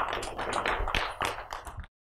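Audience applauding, a dense patter of many hands clapping, which stops abruptly just before the end.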